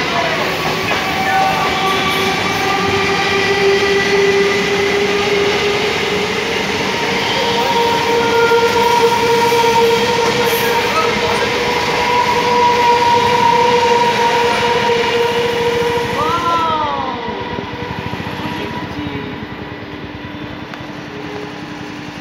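Electric multiple-unit local train pulling away and running past close by: a steady electric whine that creeps slowly up in pitch as it gathers speed, over the rumble of wheels on rail. About three-quarters of the way through, a brief arching squeal sounds and the noise drops off.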